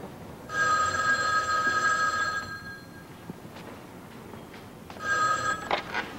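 A telephone ringing: one ring of about two seconds, a pause, then a second ring that is cut off short.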